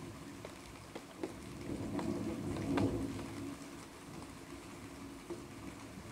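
Rain during a thunderstorm, with scattered drops tapping sharply. A low rumble of distant thunder builds about a second and a half in, peaks near the middle and fades away.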